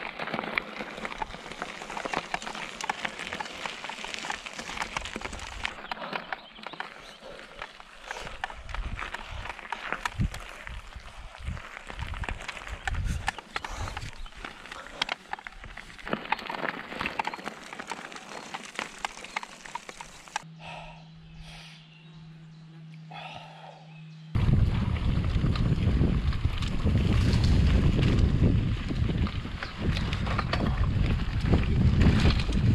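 Mountain bike rolling over loose gravel: tyres crunching with many small rattling clicks from the bike. After a quieter moment, loud wind rumble on the microphone for the last few seconds as the ride continues.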